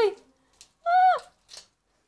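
A person's voice: one short, high-pitched vocal sound about a second in, dropping in pitch at its end, with near silence around it.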